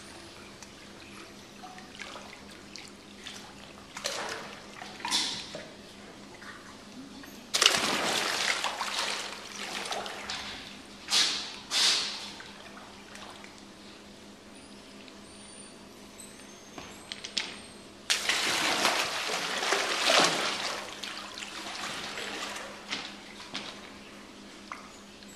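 Alligator thrashing and lunging in a pool while feeding, splashing and churning the water in bursts. A sudden loud splash about seven seconds in runs on for a few seconds, two sharp splashes follow close together near the middle, and a longer loud churning of water comes later on.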